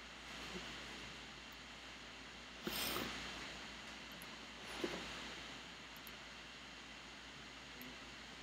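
Quiet room tone with a faint steady hiss, a few small clicks, and a short rustle about three seconds in.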